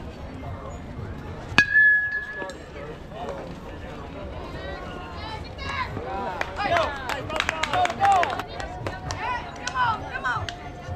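A metal baseball bat hits the ball once, a sharp ping with a brief ringing tone after it. A few seconds later several spectators shout at once.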